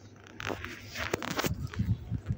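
Hard plastic toy playhouse being handled: a rustling scrape with a couple of sharp clicks, then a few soft low thumps near the end.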